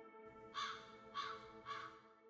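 Three short, caw-like calls about half a second apart, over soft, sustained ambient music.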